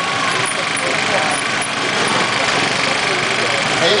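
Trials motorcycle engine running steadily at low idle as the rider balances the bike in place, over a dense, even background of noise.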